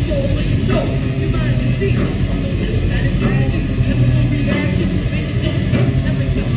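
A metal band playing live and loud: electric guitar, bass and drums in a dense, continuous wall of sound.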